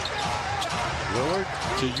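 A basketball is dribbled on a hardwood court, a few sharp bounces over a steady background of arena noise.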